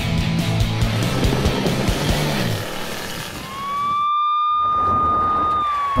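Rock music fades out about halfway through. A police car siren then rises to one steady high tone, holds it, and starts to wind down near the end: a highway patrol car pulling the vehicle over.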